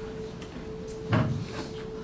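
A single dull knock from handling at the lectern, picked up by the lectern microphone, a little over a second in. A steady faint electrical hum runs underneath.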